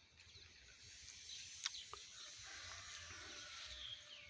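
Faint outdoor ambience with birds chirping briefly now and then, and a few soft clicks in the middle.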